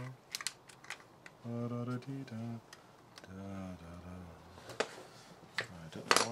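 Several sharp clicks and handling knocks from a REC-CN58 'Robo Crimp' battery hydraulic crimping tool being handled while it has lost power, with a man's low mumbling in between.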